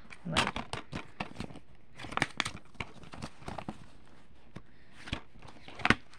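Black plastic DVD case being handled: paper cover insert rustling and crinkling, with scattered clicks and taps of the plastic. Busiest in the first two or three seconds, with two sharp clicks near the end.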